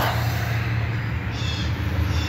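A steady low hum from a running motor or engine, with a brief higher-pitched sound a little past the middle.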